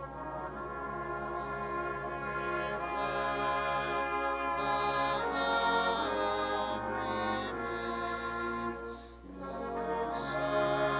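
A church band plays the opening of a slow hymn chorus on brass instruments, in held chords that change every second or so, with a short breath-like break near the end.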